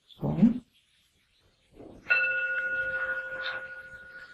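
A meditation bell struck once about two seconds in. It rings on with several steady overtones that slowly fade.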